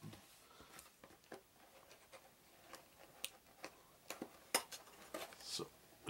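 Hands handling a small cardboard game box on a wooden tabletop: faint, scattered clicks and taps of cardboard and fingers, spread irregularly through a quiet background.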